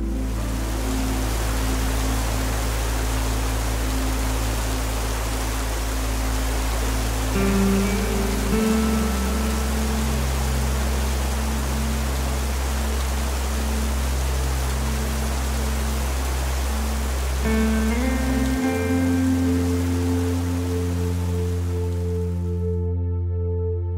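Steady rain with slow ambient music: sustained low bass notes and held chords that change about nine and nineteen seconds in, with a few brief higher notes before each change.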